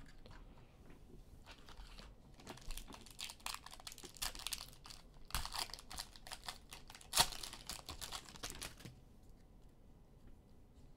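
Foil wrapper of a trading-card pack being crinkled and torn open by hand: a run of irregular crinkles and rips, the loudest tears about five and seven seconds in, stopping about nine seconds in.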